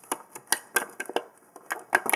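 Small plastic makeup-kit pieces being handled: a string of irregular light clicks and taps.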